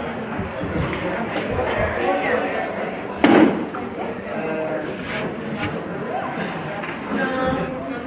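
Spectators talking in a hockey rink, with one loud slam against the boards about three seconds in and a few faint sharp clacks from the play on the ice.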